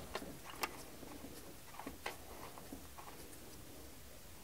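Faint, irregular metal clicks and ticks as a new fuel pressure regulator is threaded by hand onto the end of a Honda 3.5L fuel rail, about five light taps spread through the few seconds.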